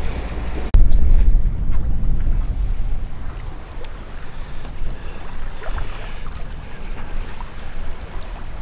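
Wind rumbling on the microphone over water rushing along a sailing catamaran's hull. It comes in abruptly just under a second in, loudest at first, then eases off.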